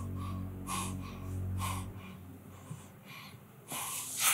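A man's heavy breathing, a few audible breaths and sighs, over a low steady hum that stops about halfway through.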